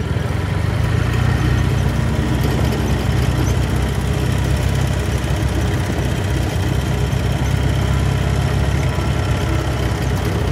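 Engine of a small vehicle running steadily at constant revs while it drives over grass, a continuous low hum with no change in pitch.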